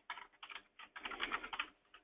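Faint typing on a computer keyboard: a quick run of key clicks, most tightly packed in the second half.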